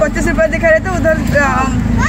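Auto-rickshaw engine running steadily beneath the talk, heard from inside the passenger cabin, with voices louder over it.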